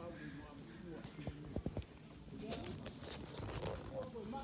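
Handling noise from a phone camera being lowered onto grass: a quick cluster of sharp knocks a little over a second in, then rubbing, with people's voices talking in the background.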